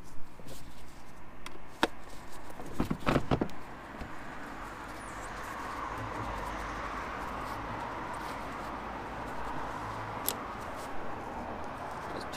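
Clicks and sharp taps of a Torx screwdriver and the plastic air box as the screws holding the MAF sensor are undone, a few taps in the first few seconds. After that a steady, even rushing noise runs in the background.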